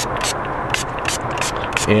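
Trigger spray bottle squirting detailing spray onto a car wheel: short hissing sprays, about three a second, over a steady background rush.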